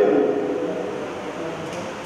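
A man's amplified declaiming voice trails off in a falling, drawn-out vowel, then a pause of hall room noise through the PA, quieter and without words.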